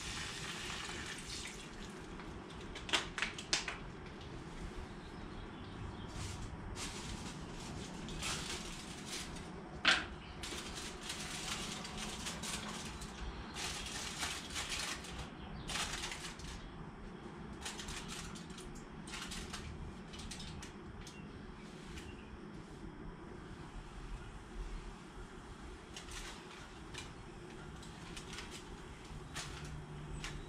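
Water poured into a hot frying pan of eggs on a portable gas camp stove, sizzling into steam for egg-steaming, then a steady low sizzle. Over it come irregular crackles of aluminium foil being crinkled and shaped into a lid over the pan.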